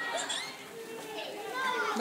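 Voices of young children and adults chattering, with no clear animal or other sound standing out.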